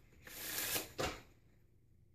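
A deck of playing cards being shuffled: a burst of card noise lasting about half a second, then a short, sharp snap about a second in.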